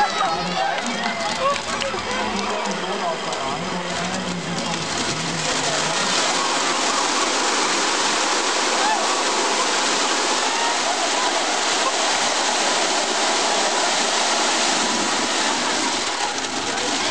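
Thousands of plastic rubber ducks pouring out of tipped containers into canal water: a steady rushing hiss that builds over the first few seconds. Crowd voices can be heard over it during the first few seconds.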